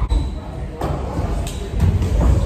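Thuds and knocks of bodies moving and landing on a wrestling ring's mat, with a deep rumble running through the ring floor and several short sharp knocks, the sharpest about a second and a half in.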